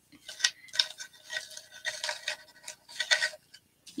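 Irregular light clicks and rustles from hands working the wreath, pushing its plastic berry picks outward through the deco mesh.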